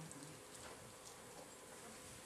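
Near silence: faint room tone with a faint steady hum.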